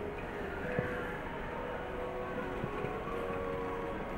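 Shopping trolley rolling over a tiled supermarket floor: a steady low rumble with a few faint clicks, under faint held tones of store background sound.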